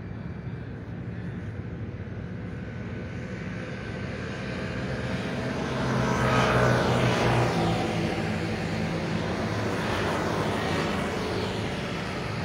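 Engine noise of a passing heavy vehicle, with a steady low hum. It grows louder over several seconds, is loudest about six seconds in, and stays fairly loud after that.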